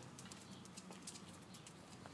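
Near silence: faint outdoor background with a few faint ticks.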